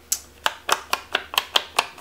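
Foam sponge dabbing ink onto the edges of embossed cardstock on a craft mat, a steady run of sharp taps about four a second.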